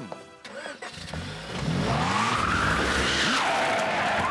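Cartoon sound effect of a van's engine revving up and its tyres screeching as it peels out. The engine climbs in pitch from about a second in, and the tyre squeal swells about two seconds in and holds loud to the end.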